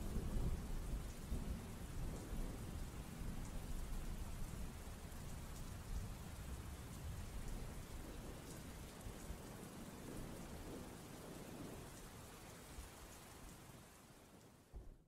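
Background rain falling steadily, with low rumbles of thunder, gradually fading out.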